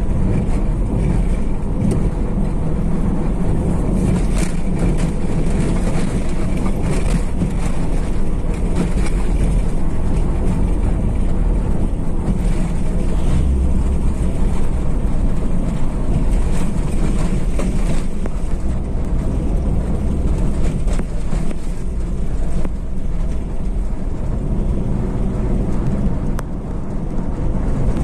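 Steady engine and road rumble of a car driving, heard inside the cabin, with a few light clicks or rattles.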